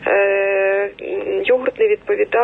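A woman's voice heard through a telephone line, holding one level-pitched hesitation sound for about a second before her speech picks up again.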